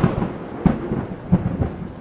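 Thunder rumbling over falling rain, a storm sound effect that starts suddenly and slowly fades.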